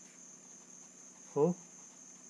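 A steady high-pitched background tone, constant throughout, with one short spoken syllable about a second and a half in.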